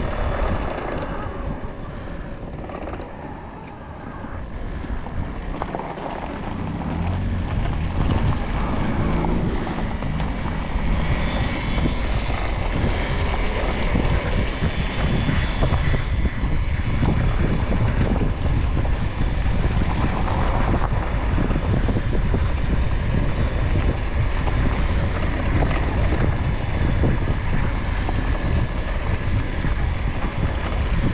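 Wind rushing over the microphone and tyre rumble from an RFN Rally Pro electric dirt bike riding along, first on tarmac and then on loose gravel. The noise drops a few seconds in, then builds back up and holds steady.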